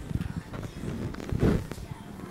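Bare feet knocking and thudding on a wooden coffee table as a child swings from a hanging strap and lands on it: a run of short knocks, with a heavier thump about one and a half seconds in.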